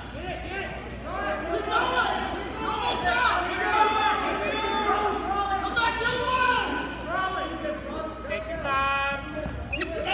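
Several people's voices talking and calling out at once in a large gym hall, with a longer held shout near the end.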